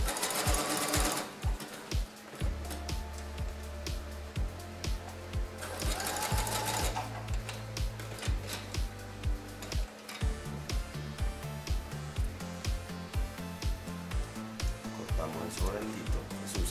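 Domestic sewing machine stitching narrow elastic onto a lace thong, running in short bursts about a second long, at the start and again around six seconds in. Background music with a steady beat plays throughout.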